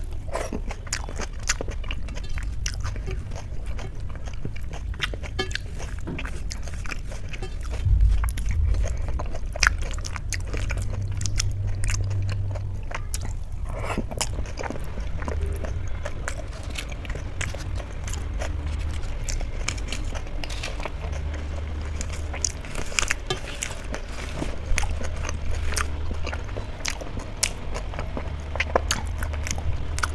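Close-miked chewing and wet mouth sounds of a person eating rice and dal by hand, a constant run of small smacking clicks, with a low rumble underneath that swells briefly about eight seconds in.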